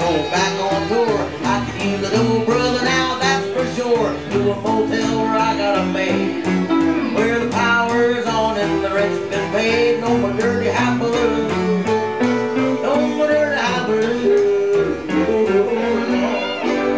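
Live country band music: upright bass plucking a walking low line under picked and strummed guitars, at a steady driving beat.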